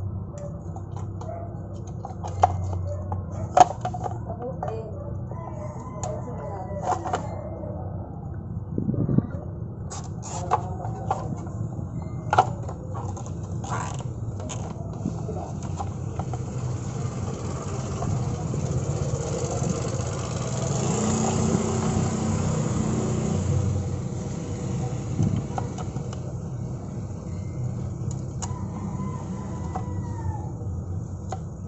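Scattered sharp plastic clicks and rattles of a car side-mirror housing and cable ties being handled while its retract spring is compressed, over a steady low hum. Midway a broad rushing noise swells and fades.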